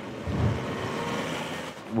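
A car driving past: a steady rush of engine and road noise that eases off near the end.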